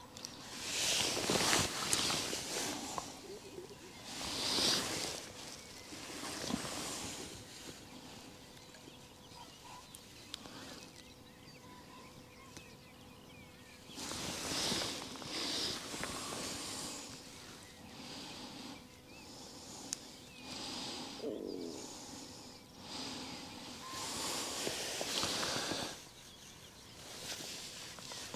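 Irregular bursts of soft rustling every few seconds: clothing and hands moving close to the microphone during handling of hook and bait.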